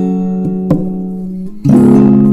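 Acoustic guitar playing an instrumental passage: a held chord fades, a light pluck about two-thirds of a second in, then a louder strummed chord near the end.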